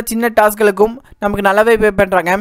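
Speech only: a person narrating, with a short pause about a second in.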